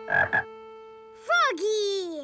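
A cartoon frog croaking twice in quick succession, over soft held music notes, followed by a short sliding voice-like sound that rises then falls.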